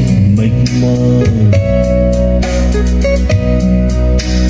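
Music playing from a MiniDisc on a Lo-D AX-M7 MD/CD receiver through loudspeakers: a loud instrumental stretch of a Vietnamese song between sung lines, with a steady bass.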